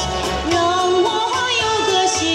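A woman sings a Mandarin ballad into a microphone over electronic keyboard accompaniment. She holds one long note through the middle, then her voice slides up near the end.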